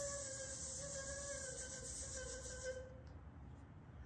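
A person humming one long, faint note that slowly sinks and fades out a little under three seconds in, then quiet room tone.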